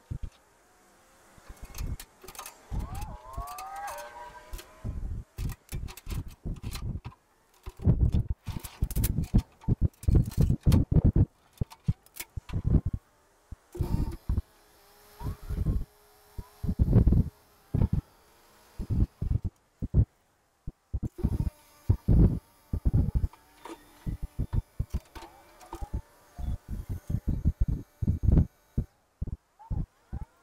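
Wind buffeting the microphone in irregular gusts, with a compact tractor's engine running faintly underneath as the tractor is driven off a flatbed trailer.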